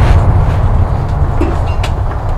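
A loud, deep rumble that slowly fades, with a few faint clicks on top.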